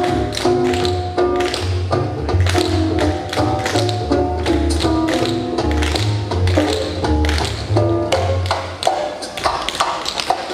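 A group of tap dancers' tap shoes clicking on the floor in quick rhythms over music with a low bass line. The bass drops out about nine seconds in, leaving the taps more exposed.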